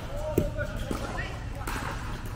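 A plastic pickleball bouncing and being tapped on the court, a few short sharp knocks, with voices echoing in the hall.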